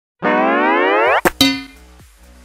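Cartoon sound effect: a pitched tone sliding upward for about a second, cut off by two quick sharp strikes that ring and fade.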